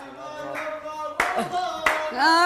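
Two sharp hand claps, about a second in and again near the end, over a faint held sung note.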